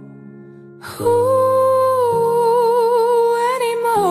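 Music: a woman's voice holds one long wordless note with vibrato over soft sustained accompaniment, coming in strongly about a second in after a quiet moment and falling in pitch near the end.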